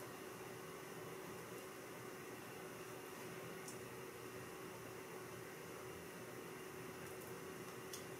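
Faint steady hiss of small-room tone with a low steady hum, broken by two or three faint ticks.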